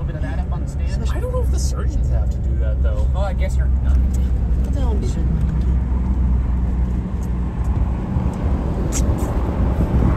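Steady low rumble of a vehicle driving on a snow-covered road, heard from inside the cabin, with a hiss that grows louder near the end.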